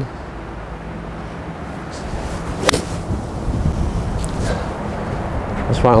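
A golf ball struck with a seven-iron: one sharp, crisp click of the clubface hitting the ball about halfway through.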